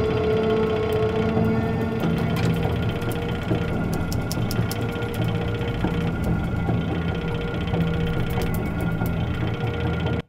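Electroacoustic music built from processed recordings of water, an upright bass and a spinning bicycle wheel. Sustained tones run under a dense layer of small rapid clicks and mechanical-sounding iterations, the "chuk-chuk-chuk" of the bicycle wheel.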